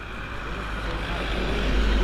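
A van driving past on the road, its engine and tyre noise growing steadily louder as it approaches and passes close by.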